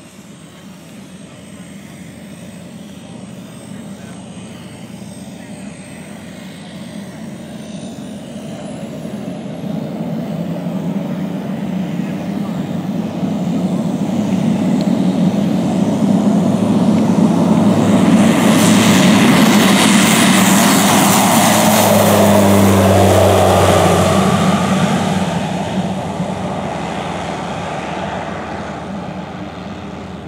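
Single-engine propeller plane on amphibious floats taking off at full power. The engine grows steadily louder as it rolls toward and past, is loudest about two-thirds of the way through with its pitch dropping as it goes by, then fades as it climbs away.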